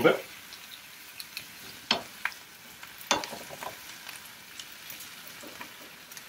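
Broccoli sizzling in a skillet with a little oil and water as a wooden spoon stirs it, with a few sharp knocks of the spoon against the pan, the loudest about two and three seconds in.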